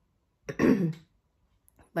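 A woman clears her throat with a single short cough about half a second in, lasting about half a second.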